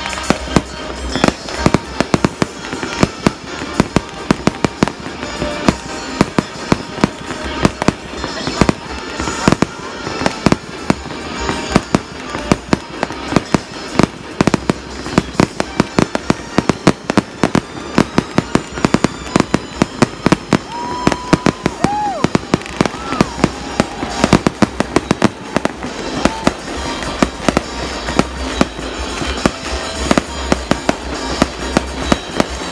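Fireworks display: a dense, irregular barrage of aerial shells bursting, several sharp bangs a second, with crackling between them.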